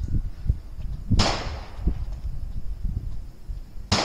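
Two gunshots from other shooters on the range, one about a second in and one right at the end, each a sharp crack with a short ringing tail, over a low rumble.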